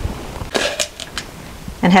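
Plastic paint cups handled on a tabletop: a low thump, then a few sharp clicks and crackles of plastic over about a second.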